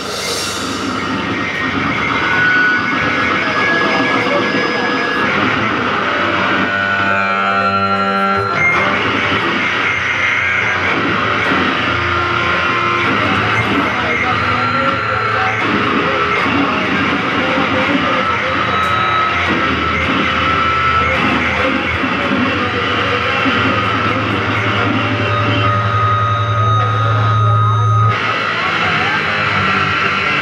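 Raw noise-punk played live: a dense, unbroken wall of distorted noise from synthesizer and bass, with held synthesizer tones that change pitch every few seconds and no drum beat.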